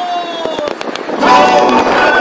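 Street busker's music played loud through a portable loudspeaker amplifier: a held sung note fades out, a short burst of crackling pops follows, then the music and singing come back louder about a second in.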